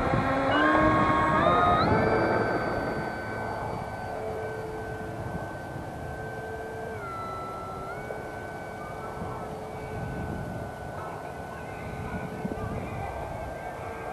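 E-flite F4U-4 Corsair 1.2 m electric RC plane's brushless motor and propeller whining. The pitch rises in steps as the throttle comes up for takeoff, then holds steady. The pitch drops a step about seven seconds in, and the whine grows quieter as the plane climbs away.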